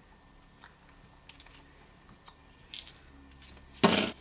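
Small steel screwdriver bits being pulled from the handle's bit magazine and set down on a hard tabletop. A few light metallic clicks are followed by a brief small clatter a little under three seconds in.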